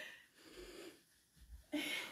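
A person's breaths as they recover from a fit of laughter: a breathy exhale fading at the start, a short near-silent pause, and another breath near the end, all faint.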